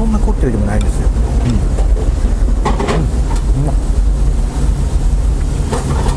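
Ramen shop background: indistinct voices over a steady low hum, with a short burst of noise about three seconds in.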